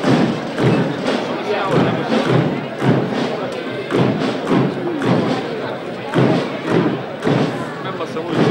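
Slow, evenly spaced thuds about once a second, keeping the pace of a religious procession, over a murmuring crowd.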